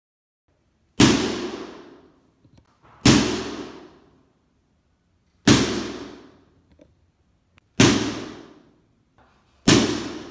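Five sharp impulse bangs about two seconds apart, each followed by room reverberation that dies away over roughly a second. These are impulse noises made to measure a room's reverb time (RT60).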